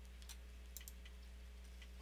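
Near silence: a steady low electrical hum with a few faint, scattered clicks of a computer mouse.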